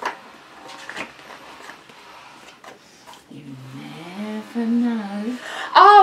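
Paper picture-book pages being handled, with a few soft clicks and rustles as the fold-out last page is worked open. From about halfway a quiet voice speaks, and louder speech starts near the end.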